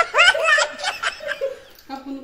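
A woman laughing in a quick run of giggles that trails off about halfway through.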